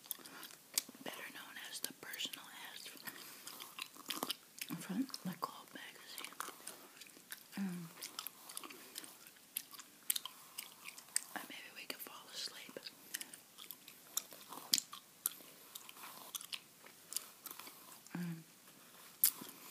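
Bubble gum being chewed close to the microphone: moist mouth clicks and smacks coming irregularly, several a second.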